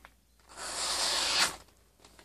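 Razor-sharp knife blade slicing through a hand-held sheet of paper: a single papery hiss about a second long, starting half a second in.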